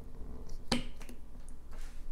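A flexible lid being pushed down over the rim of a glass bottle: one sharp click just under a second in, with a few lighter clicks and a brief rustle of handling around it.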